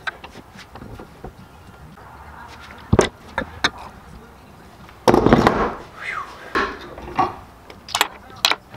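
Three-barrel aluminium hand injector being filled from glass measuring cups of hot liquid plastic: a quiet stretch, two sharp clicks about three seconds in, then a louder burst of handling noise about five seconds in.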